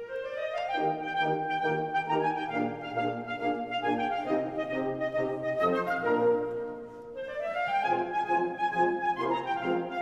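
A symphonic wind band plays: a quick rising run opens, then a melody over rapidly repeated short chords, with another rising run about seven to eight seconds in.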